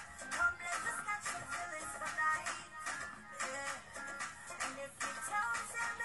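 A song with a beat playing through the small built-in speakers of an Asus Vivobook E12 laptop, heard in the room.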